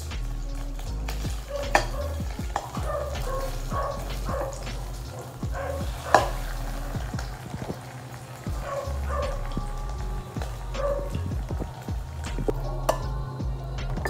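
Slices of meat frying in oil in a steel wok: a steady sizzle with occasional sharp clicks.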